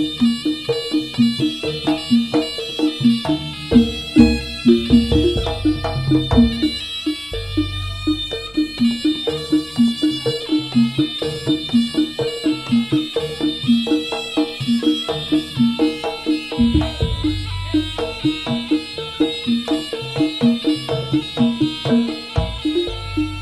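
Live Javanese jaranan gamelan music. Pitched metal instruments are struck in a quick, even rhythm, a high wavering melody runs on top, and deep drum swells come and go.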